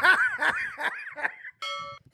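Hearty laughter in quick repeated bursts, breaking up the retelling of a dad-joke punchline. About a second and a half in, after a brief silence, a short steady tone cuts in abruptly.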